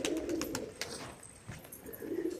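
Pigeons cooing faintly, fading about halfway through, with a few soft clicks.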